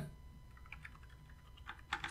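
Faint computer keyboard typing: a run of light key clicks in the second half, ending in one louder keystroke.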